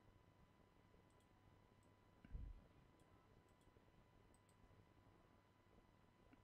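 Near silence with a few faint computer mouse clicks scattered through, and one soft low thump a little over two seconds in.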